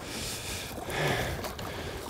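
A hooked lake sturgeon splashing at the water's surface, heard as a steady wash of water noise that swells a little about a second in.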